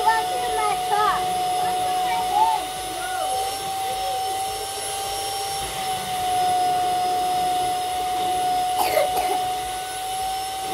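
Vacuum cleaner motor running steadily with a high, even whine. Children's voices sound over it during the first few seconds, and there is a short knock about nine seconds in.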